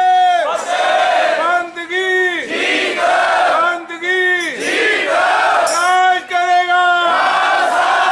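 Sikh kirtan: the congregation chants in chorus, one short phrase repeated over and over, about one a second, with harmonium.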